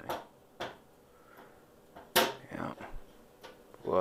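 A few scattered clicks and knocks from the plastic keyboard of a Brother WP-95 word processor being handled and turned over, the loudest about two seconds in.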